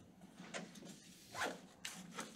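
Faint, scratchy strokes of a marker on a whiteboard: a few short strokes about half a second in, around a second and a half in, and just before the end.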